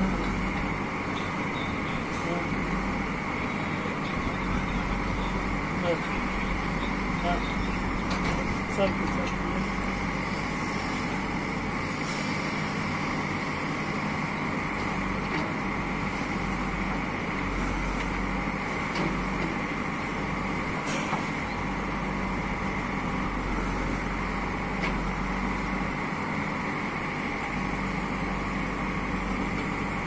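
Kirloskar diesel engine of a JCB 3DX backhoe loader running steadily under working load as the backhoe digs, with a few short sharp knocks.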